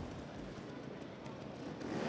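Trials motorcycle engine running at low revs.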